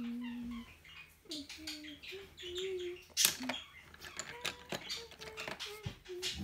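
A person softly humming a wandering tune in short held notes, over the scratching of a coloured pencil on paper; a sharper scratch stands out about three seconds in.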